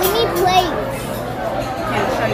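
Indistinct voices and chatter of diners in a busy restaurant dining room, with a high-pitched voice standing out briefly near the start.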